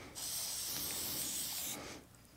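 Aerosol can of matte black spray paint spraying in one steady hiss of about a second and a half, starting just after the start and cutting off near the end.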